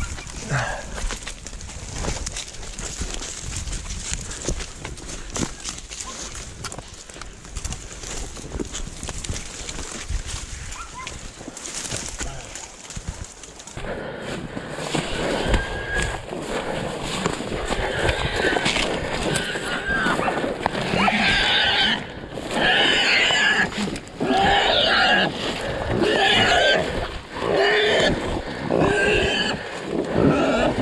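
Crunching and crackling of someone pushing through dry brush and grass, then from about halfway in a wild hog squealing loudly and over and over, the cry of a hog caught by the dogs.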